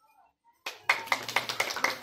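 People clapping, starting about two-thirds of a second in after a brief near silence, in a fairly even run of about four claps a second.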